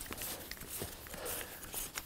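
Faint handling noise with a few small ticks: knit-gloved hands turning and unscrewing the centre column of a Velbon ULTRA REXi L tripod.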